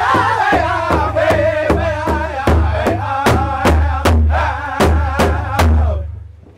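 Powwow drum group singing an intertribal song in chorus over steady unison beats on a large powwow drum, about two and a half strokes a second. The singing and drumming end together near the end.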